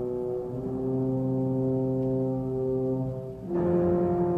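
Orchestral film score: low brass holding sustained chords. The chord shifts about half a second in and again near the end.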